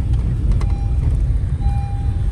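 Steady low rumble of a car driving over a dirt road, heard from inside the cabin, with a faint thin tone over it.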